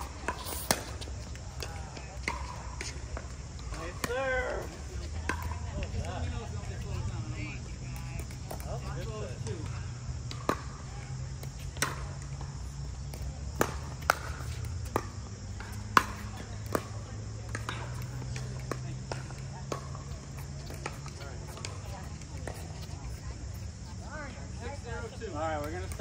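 Pickleball paddles striking the hollow plastic ball in a rally: a string of sharp pops at irregular intervals, often a second or so apart, the loudest about two-thirds of the way through. Brief voices are heard near the start and again near the end.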